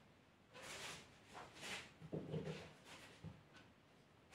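Faint, short breathy snuffles followed by a few brief low vocal sounds from a pet close by.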